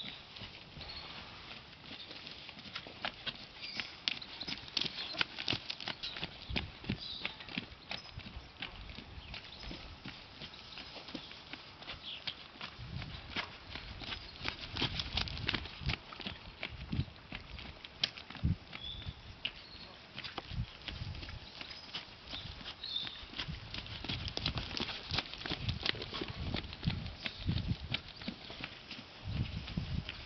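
Hoofbeats of a ridden horse trotting on a sand arena: a steady, continuous run of dull hoof strikes.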